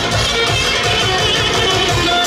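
A live band plays loud, fast folk dance music with a steady drum beat, a saxophone carrying a wavering melody.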